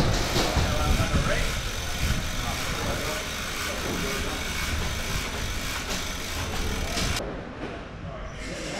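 A steady hiss over a low rumble, with indistinct voices, cutting off suddenly about seven seconds in.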